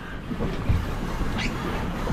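Wind buffeting the microphone over the low rumble of an open boat on the sea, with a soft knock a little past half a second in.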